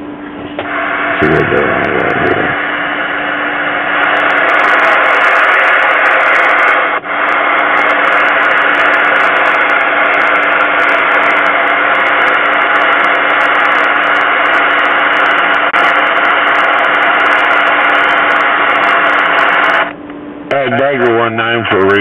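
Cobra 29 LTD CB radio's speaker giving out steady receiver static with a low hum under it, the squelch open on an empty channel. Near the end the static stops and a recorded voice comes over the radio.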